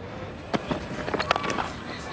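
Cricket stadium crowd noise with a single sharp crack of bat on ball about half a second in, followed by scattered claps from the crowd as the shot is struck.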